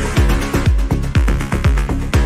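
Electronic dance music from a DJ mix, with a steady four-on-the-floor kick drum at about two beats a second, each kick dropping in pitch.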